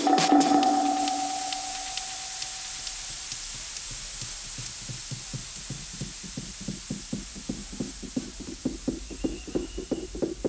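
Electronic dance music breakdown: the beat drops out, held synth tones fade away under a hissing white-noise wash, and a drum roll enters about halfway through and gradually quickens into a build-up.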